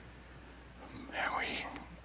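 A man speaks one soft, half-whispered word about a second in. Around it is quiet room tone with a steady low hum.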